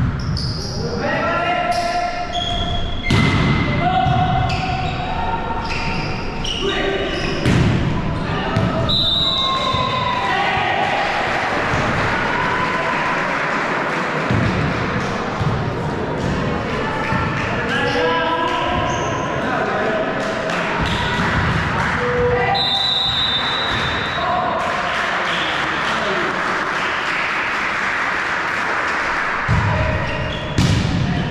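Volleyball rally in a gym hall: the ball struck and hitting the floor, with players calling out, all echoing in the large hall.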